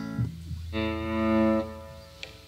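Electric guitar played through an amp: a couple of short notes, then one note held for about a second over a low steady hum.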